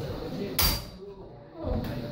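Voices in a hall, with a single sharp knock about half a second in. The audience begins to applaud near the end.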